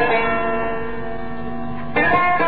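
Plucked lute in an instrumental passage: a chord struck just after the start rings on with several held notes, slowly fading, and the next notes are plucked at the very end.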